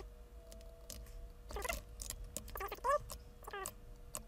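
Computer keyboard typing in scattered key clicks over a faint steady hum, with a few short pitched calls that rise and fall, the loudest about three seconds in.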